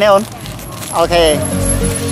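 A person's voice at the start and again about a second in, with steady background music coming in about one and a half seconds in.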